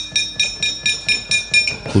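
Gamelan metal percussion clinking in a steady rhythm, about four ringing strikes a second. Near the end comes a louder strike as a voice starts to sing.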